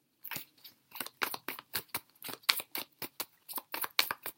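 A deck of tarot cards being shuffled by hand off camera: a quick, uneven run of short crisp snaps, several a second.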